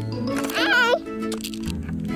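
Upbeat background music with sustained notes, crossed about half a second in by a brief, high, wavering vocal sound.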